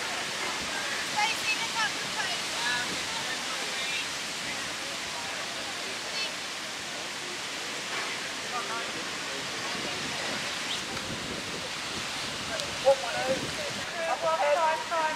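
Steady rushing outdoor noise with faint distant voices over it. A single short knock comes near the end.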